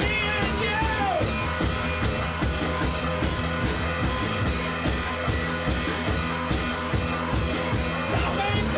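Rock music with a steady drum-kit beat over a bass line.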